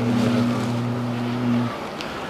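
A steady low hum on one unchanging pitch, lasting about a second and a half and then stopping.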